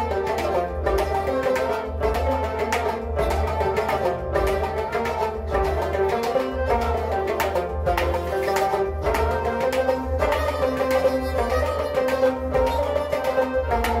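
Kashmiri Sufi music: a harmonium playing sustained tones with plucked string instruments and a steady percussive beat.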